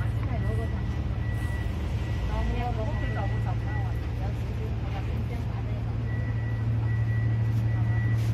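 A steady low machine hum, with faint voices of other people about two to three seconds in and a faint high tone that comes and goes.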